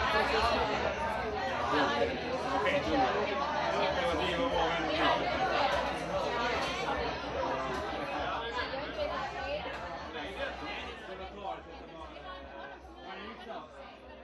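Many people talking at once in a large room, a steady hubbub of overlapping conversation with no single voice standing out. It fades out gradually over the second half.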